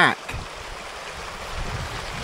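Steady rushing of a river running, an even noise with no distinct events.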